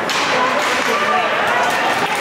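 Ice hockey game in an indoor rink: a sharp clack right at the start, then voices calling out over the steady rink noise.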